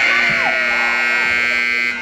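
Indoor arena scoreboard buzzer sounding one steady blast of about two seconds as the game clock reaches zero, signalling the end of the half.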